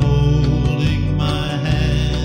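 Country ballad: a sung line with long held notes over steady bass and guitar backing.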